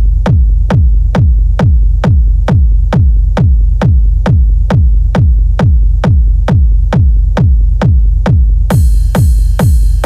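Techno track with no vocals, a kick drum on every beat at about two a second, each hit dropping in pitch, over a steady low bass tone. Near the end a brighter, busier high layer comes in over the kicks.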